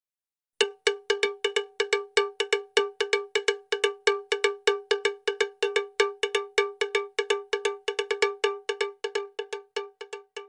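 Intro sound effect: a ringing, cowbell-like metallic tone struck over and over on one pitch, about five times a second, starting just after the beginning and thinning out near the end.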